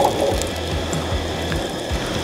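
Sweet potato cubes sizzling as they fry in hot oil in a Firebox anodized skillet, a steady hiss, over background music.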